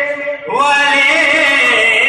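A man singing a naat (an Urdu devotional poem) in a drawn-out, chant-like style. A held note breaks off at the start, and a new phrase begins about half a second in, sliding up in pitch and then winding through ornaments.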